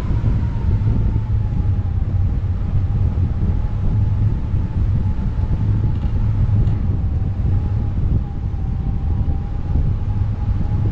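Wind rushing over a camera microphone on a hang glider in flight: heavy, low buffeting. Under it runs a thin, steady whistle that drops slightly in pitch in the first couple of seconds, then holds.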